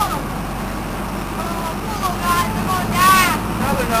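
A boat's engine runs with a steady low rumble under children's excited voices; one voice rises loudest about three seconds in.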